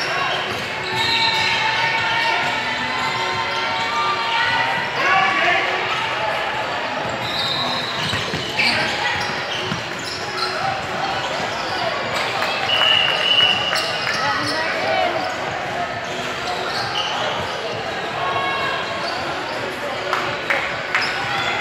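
Basketball game in a gym: a ball bouncing on the hardwood court among the players' and spectators' indistinct shouts and chatter, echoing in the large hall, with a brief high squeak about two-thirds of the way through.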